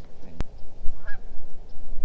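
Goose honking: a few short honks about a second in, over a low rumble of wind on the microphone. A single sharp click comes just before the honks.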